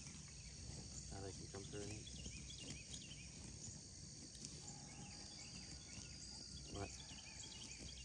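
Quiet dawn field ambience: a steady, high-pitched insect chorus with small repeated chirps. A faint, distant voice comes in briefly about a second in and again near the end.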